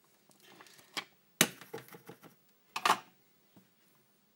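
Clicks and clatter of tools being handled and set down on a workbench after hand soldering, as the soldering iron is lifted away from the board. The loudest clatter comes about one and a half seconds in, a second one near three seconds.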